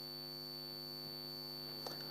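Steady electrical hum with evenly spaced overtones and a thin constant high whine above it, with one faint click near the end.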